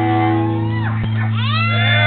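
Amplified guitar chord held and ringing out at the end of a rock song, with a steady low note underneath. About a second and a half in, a high voice whoops, rising and then holding.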